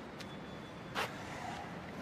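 Steady low outdoor background hum of distant city traffic, with one brief sharp knock or rustle about a second in.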